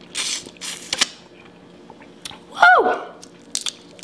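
Close-up wet chewing and biting of a sauce-covered boiled shrimp in the first second. About two and a half seconds in comes a brief high vocal sound sliding down in pitch, the loudest sound, followed by a few small clicks.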